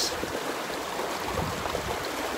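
Flowing river water: a steady, even rush of water.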